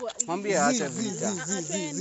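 A person's drawn-out, wordless vocal sound, its pitch wobbling evenly up and down about four times a second.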